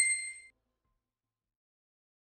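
A single bright, high-pitched ding from a logo-animation sound effect, ringing briefly and dying away within about half a second.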